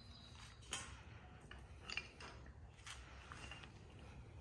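Faint handling sounds: a shop rag rustling and a few light clicks as a small engine bearing shell is wiped and turned in the hand, otherwise quiet.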